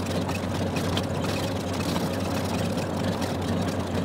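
Floatplane engine and propeller running at low, steady taxiing power, heard from inside the cabin as a steady drone.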